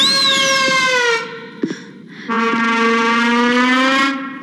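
Comedic film background music: a pitched swoop that shoots up and slides back down over about a second, a short pause, then a long held note.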